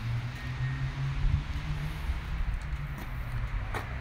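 An engine idling: a steady low hum with a faint click near the end.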